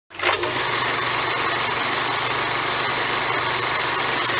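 Steady, loud mechanical whirring noise with a low steady hum underneath.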